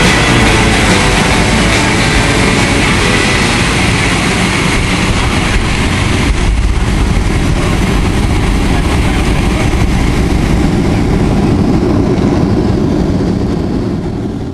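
Jet airliner's engines and rushing noise heard from inside the cabin as the plane rolls fast along the runway. The sound fades out near the end.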